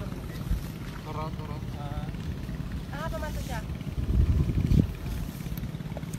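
Wind buffeting an outdoor microphone, a low rumble with stronger gusts about four seconds in, with faint distant voices now and then.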